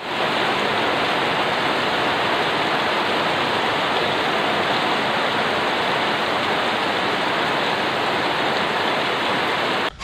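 Heavy rain pouring down in a steady, dense hiss.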